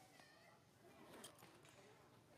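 Very quiet ambience with faint, high squeaking calls from an infant macaque: a thin, wavering squeak about a quarter second in and a lower one around a second in.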